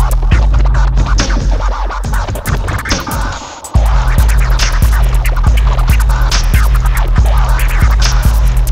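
Turntable scratching, quick cut-up strokes on a record, over an electronic hip hop beat with a heavy bass. About two seconds in, the bass and beat drop away for a moment, then come back suddenly just before four seconds.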